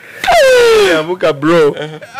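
Loud, hearty laughter from a man: a long high-pitched shriek that falls in pitch, followed by quick pulsing bursts of laughing.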